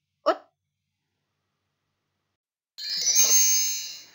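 Short electronic chime sound effect, bright and ringing with many high tones, lasting just over a second near the end and fading out; typical of a slide-transition sound in a presentation. Before it, a brief spoken syllable and then total silence.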